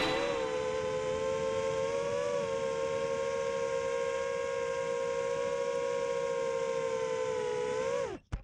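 Brushless motors and propellers of an FPV racing quadcopter, heard from the drone itself, humming at one steady pitch as it cruises slowly. The pitch rises slightly about two seconds in and sags near the end as the throttle comes down.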